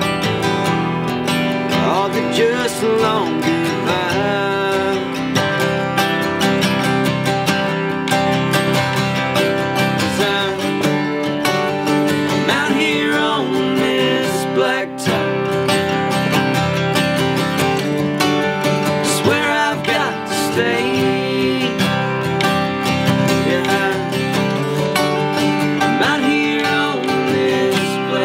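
Two acoustic guitars, a 1964 Epiphone Frontier flat-top and a 1951 Stromberg archtop, played together in a country tune, one strumming chords while the other picks a lead line.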